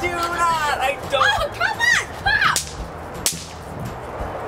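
Two snap pops (bang snaps) thrown onto a concrete driveway, going off with sharp cracks a little past halfway and again about a second later, after high-pitched squealing laughter.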